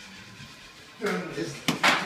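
Quiet room tone for about a second, then a person speaking a word or two, with a sharp click shortly before the end.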